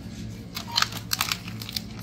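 Plastic food packaging crinkling as grocery items in a shopping trolley are handled, in quick irregular rustles starting about half a second in, over a low steady hum.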